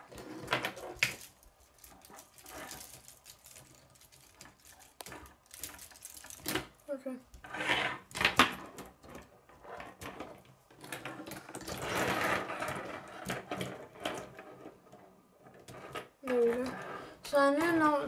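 K'nex plastic rods and connectors clicking and knocking as they are handled and snapped together, in irregular clicks with a stretch of rustling partway through.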